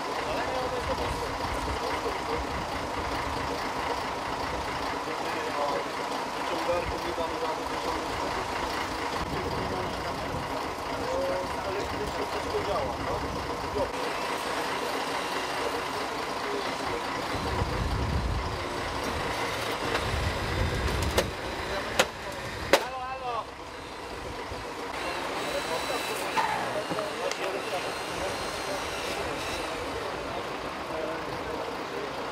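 A heavy vehicle engine running steadily under voices talking, with a heavier rumble a little past the middle and three sharp knocks shortly after.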